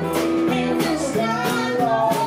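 Live bluesy folk-rock band: a woman singing in a high voice over guitar, with a steady percussive beat.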